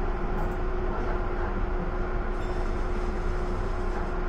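Tokyu Den-en-toshi Line commuter train running along the track, heard from inside the car: a steady rumble of wheels on rails with a steady hum at one pitch. A faint higher sound joins about two and a half seconds in.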